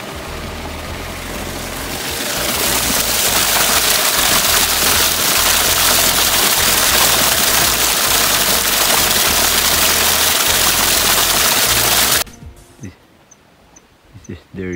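Water rushing down a narrow concrete irrigation channel: a steady, loud rush that swells about two seconds in as it comes close, and cuts off suddenly near the end.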